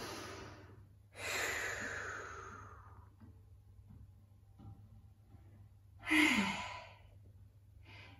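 A woman breathing out audibly as she rests after a Pilates exercise: a long exhale about a second in that slowly fades, then a short voiced sigh with a falling pitch about six seconds in.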